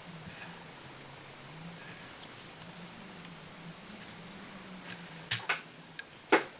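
Soft scratching and rustling of fingers handling feathers and fibres on a fly held in a tying vise, over a faint low steady hum. A single sharp click comes about five seconds in.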